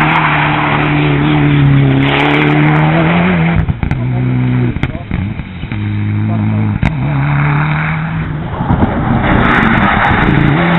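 Mitsubishi Lancer Evolution VIII rally car's turbocharged four-cylinder engine running at high revs as the car is driven hard on tarmac. The sound drops away as the car heads off to the far end about three and a half seconds in, then comes back loud as it returns near the end.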